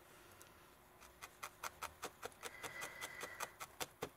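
Barbed felting needle stabbing repeatedly into wool, a faint, even run of pokes at about five a second, starting about a second in.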